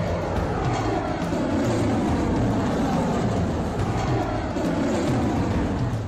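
Rocket engines at lift-off: a loud, steady, rumbling roar of exhaust noise.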